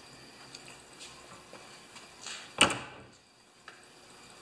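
Painted cabinet door swung shut: a brief swish, then a single knock about two and a half seconds in, with faint small clicks of handling around it.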